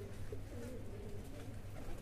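Domestic pigeon cooing faintly, a few soft low held coos over a steady low background hum.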